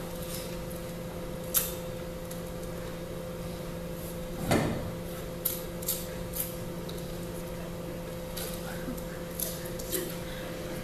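Fingernails picking at a ketchup bottle's label, with other small handling noises at a table: scattered light clicks and scratches, and one longer, louder rustle about four and a half seconds in, over a steady low hum.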